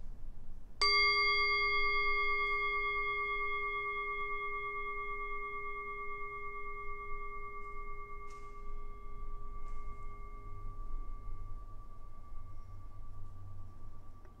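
A singing bowl struck once, then ringing in a long, slowly fading tone with several bright overtones above a low hum. Rung after a long silence in a contemplative prayer, it marks the end of the silent time.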